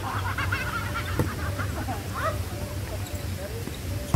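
A volleyball struck once about a second in, over a mix of players' voices and many short chirping calls.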